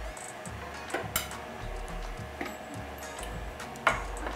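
Background music with a steady beat, with a few sharp clinks of a metal spoon against a stainless steel pot as soup is dished out. The loudest clink comes near the end.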